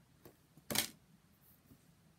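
A faint click, then a brief soft rustle about three-quarters of a second in, as a tarot card is handled and lowered.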